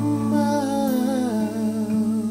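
Overdubbed male voices, all one singer, humming a sustained chord in close harmony. Low notes are held steady while a higher voice slides slowly downward.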